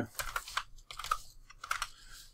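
Computer keyboard being typed: a quick run of separate keystrokes.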